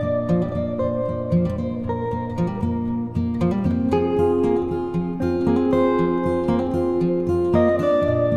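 Instrumental background music of plucked strings, with notes starting and ringing out several times a second.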